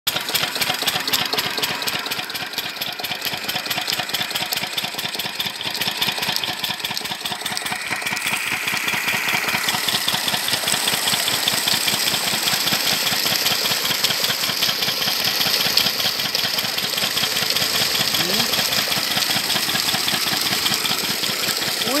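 Stationary farm diesel engine with twin flywheels running steadily, chugging at a fast, even beat as it drives a bore pump lifting water from about 40 feet. Water gushing from the pump's outlet pipe adds a rushing hiss, stronger from about ten seconds in.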